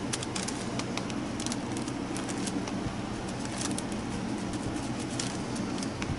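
Plastic card dabbing into a jar of black paint and scraping across a paper journal page: light scattered clicks and scrapes over a steady low hum.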